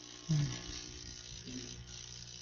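Low steady background hum of an online video-call audio line, broken by one short hesitant 'mm' from a person about a third of a second in and a fainter one near the middle.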